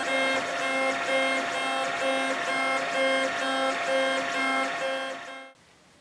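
LulzBot TAZ 4 3D printer printing, its stepper motors whining at fixed pitches in a pattern that repeats about twice a second as the print head sweeps back and forth. The sound cuts off suddenly near the end.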